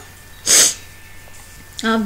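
A single short, loud, breathy burst from a person close to the microphone, about half a second in, lasting roughly a third of a second.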